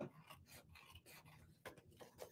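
Scissors cutting through paper: a run of faint snips, with a sharper cut near the end.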